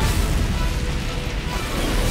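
Cartoon sound effect of a mighty fart blast used as a rocket-like turbo boost: a loud rumbling blast that starts suddenly and keeps going, with music underneath.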